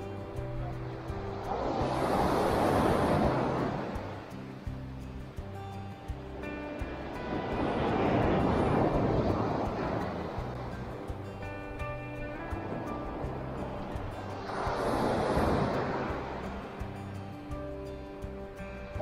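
Sea waves breaking and washing up a pebble beach in three surges, each swelling and fading over a few seconds, over steady background music.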